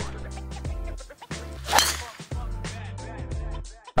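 A golf driver striking a teed ball: one sharp crack a little under two seconds in, over steady background music.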